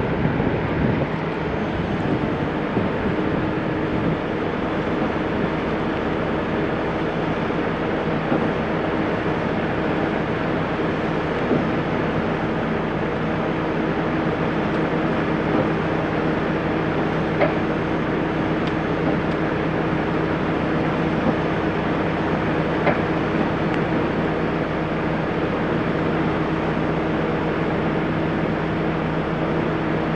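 Heavy-duty wrecker's diesel engine running steadily, a constant drone with a steady low hum.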